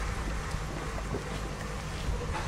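Wind buffeting the microphone outdoors: a steady, uneven low rumble with a few faint clicks in it.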